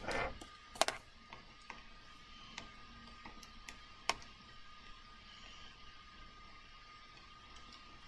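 Faint, irregular clicks of calculator keys being pressed one at a time, over a faint steady electrical hum.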